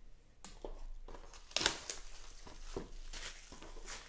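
Clear plastic card packaging crinkling and clicking in the hands: a string of irregular crackles, the sharpest about one and a half seconds in.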